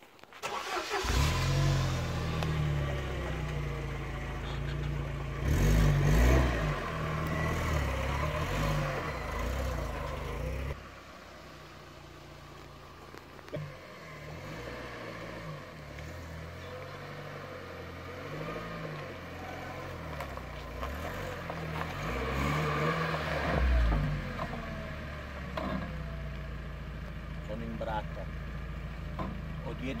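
UAZ-452 van's engine starting about a second in, then running with the revs rising and falling. The sound drops abruptly to a quieter run about eleven seconds in and swells again later as the van moves.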